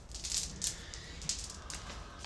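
Strings of a beaded door curtain rattling and clicking in short bursts as they are pushed aside and swing.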